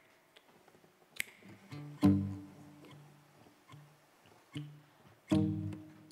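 Nylon-string classical guitar playing a sparse introduction: a few single notes and two full chords, one about two seconds in and one near the end, each left to ring and fade. A sharp click comes about a second in.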